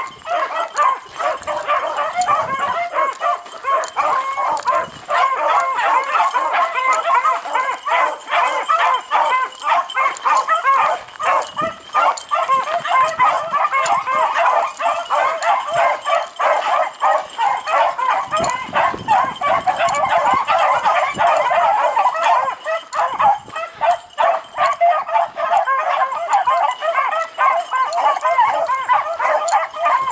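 A pack of beagles baying together, many voices overlapping without a break: the hounds are in full cry, running a rabbit's scent trail.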